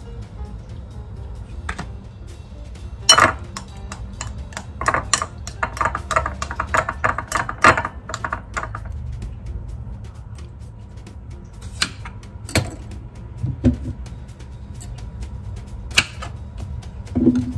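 Metal spoon stirring a liquid dressing in a bowl, clinking against the bowl in a quick run of clicks from about three to nine seconds in, with a few sharper knocks later. Background music plays throughout.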